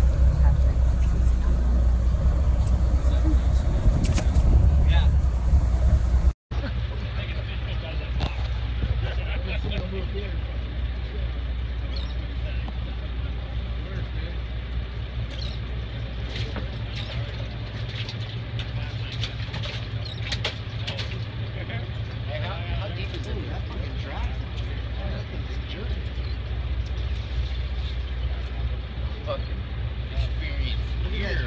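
Steady low rumble of a fishing boat's engine, with faint, indistinct voices of people on deck. The rumble is louder for the first six seconds, then drops a little after a brief break.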